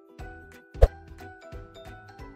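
Animated logo sting: light, evenly repeating plucked notes with one sharp, loud pop a little under a second in.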